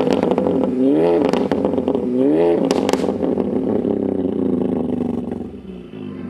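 The tuned Mk7 Golf R's big-turbo 2.0-litre four-cylinder is blipped through its quad exhaust, revving up and back down about every 1.3 seconds, with a few sharp pops about three seconds in. It then drops back to a steady idle that fades near the end.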